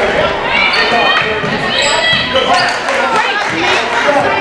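Live basketball in a gym: a ball dribbled on the hardwood court, sneakers squeaking in short high squeals, and players and spectators calling out, all echoing in the large hall.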